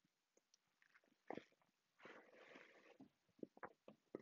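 Near silence: room tone with a few faint short clicks.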